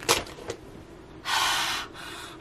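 A tearful woman's breathing while crying: a quick sniff near the start, then a heavy, hissy breath about halfway through.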